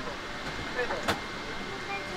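Airliner cabin during boarding: a steady hum of the ventilation, with scattered chatter of passengers. A single sharp click comes about halfway through.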